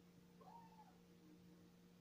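Near silence with a low steady hum; about half a second in, one faint short call that rises and falls in pitch.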